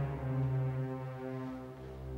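Dramatic background music: low, held brass-like notes that shift from one pitch to the next.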